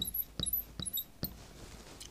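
Marker writing on a glass lightboard: a quick string of short squeaks and taps as digits are written, falling quiet in the second half.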